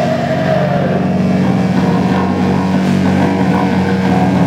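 Loud live rock band holding a low, droning distorted chord on guitar and bass, with little drumming over it.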